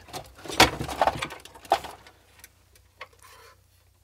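Sheet-metal electronics chassis being handled and turned over on a workbench: clicks, knocks and a light rattle of loose parts over the first two seconds, then a few faint ticks.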